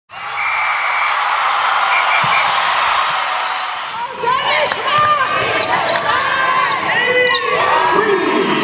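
Steady rushing noise for about four seconds, then indoor basketball game sound: rubber-soled shoes squeaking on a hardwood court and a ball bouncing, with voices in the gym.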